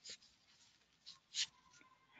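A quiet pause holding two faint, brief hissy sounds about a second and a half apart, with a faint steady tone in the second half.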